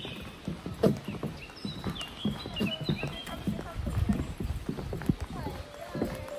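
Footsteps on a wooden plank boardwalk: shoes knocking hollowly on the boards at a walking pace. Birds sing in the surrounding forest, and music fades in near the end.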